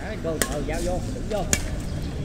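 Badminton rackets striking a shuttlecock twice, sharp pops about a second apart, in a doubles rally.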